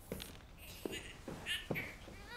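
A few footsteps of heeled boots on a wooden floor, each a short sharp tap, with the soft rustle of a cardigan being pulled on in between.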